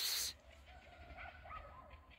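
A cat meowing faintly a few times in short calls, after a brief hissing noise right at the start.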